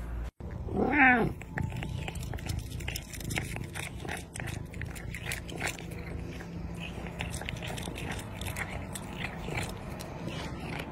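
A domestic cat gives one short meow about a second in, then crunches dry kibble steadily as it eats from a bowl.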